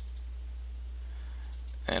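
A few computer mouse clicks just at the start, over a steady low electrical hum.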